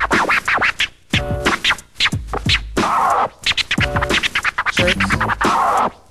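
Turntable scratching: a vinyl record is worked back and forth by hand on a Vestax PDT-5000 turntable and cut through a Vestax PMC-05PRO mixer. Rapid strokes of a sampled sound are chopped on and off by the fader, with short gaps where it is cut out, in a run of combined scratch techniques.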